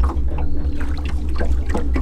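Water sloshing against the hull of a bass boat over a steady, uneven low rumble, with a few faint clicks.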